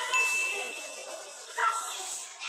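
A single bright bell-like ding that starts suddenly just after the beginning and rings on one steady pitch for about half a second, with a second short sharp sound near the end, over background music.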